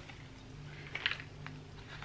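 Faint rustling and a few light handling clicks as a small packaged makeup brush set is taken out of a bag, over a low steady hum.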